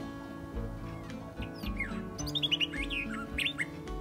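A bird calling in a quick run of short chirps, many sliding down in pitch, starting about a second and a half in and lasting about two seconds, over soft acoustic guitar music.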